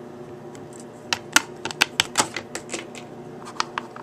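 Small plastic toy pieces being handled and set down on a hard tabletop: a run of irregular sharp clicks and taps starting about a second in, over a faint steady hum.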